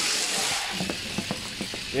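Die-cast Matchbox toy cars rolling fast down an orange plastic track, a steady rushing rattle of small metal-axled wheels that thins out after about two-thirds of a second, followed by a scatter of light clicks and knocks as the cars run on toward the finish.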